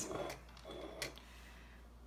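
Quiet handling sounds of a paintbrush and a ceramic watercolour palette: a soft rustle, then one small sharp click about a second in.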